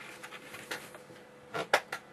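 A few light clicks and knocks of small hard objects, with a quick cluster of louder taps about a second and a half in.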